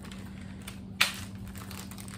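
Clear plastic bait bags being handled, a soft crinkling with one sharp crackle of plastic about a second in.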